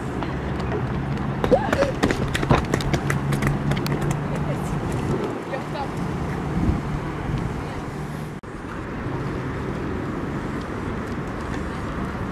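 Outdoor ambience of distant voices over a steady low engine hum, with a flurry of sharp clicks and knocks a second or two in. The sound drops out briefly about eight seconds in and resumes as a plainer outdoor background.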